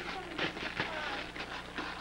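Gift wrapping paper crinkling and rustling in quick, irregular bursts as presents are handled, with faint indistinct voices.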